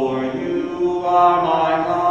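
A single voice singing a slow, chant-like hymn, holding long notes.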